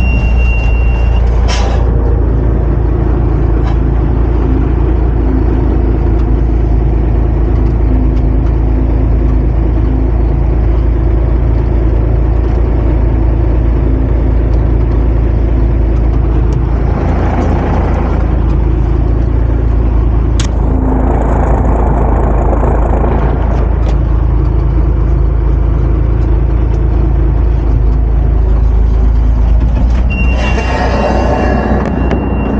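The diesel engine of an M939A2 5-ton military truck, a Cummins inline-six turbodiesel, heard running steadily from inside the cab. It swells louder twice past the middle, with a sharp click about twenty seconds in.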